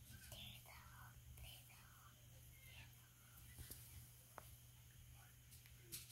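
Near silence: faint whispering in the first few seconds over a steady low hum, with a couple of faint clicks in the middle.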